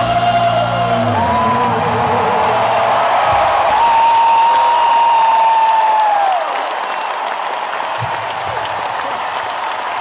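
A live rock band's final notes ring out and stop about a second and a half in, and a large arena crowd cheers and applauds. A long held high note runs through the cheering and slides down and stops about six seconds in.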